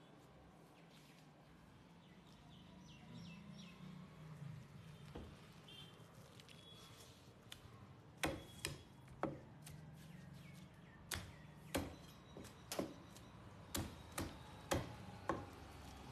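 Heavy curved fish knife chopping into a large sea bass on a wooden log chopping block: about a dozen sharp chops, roughly one to two a second, starting about halfway through.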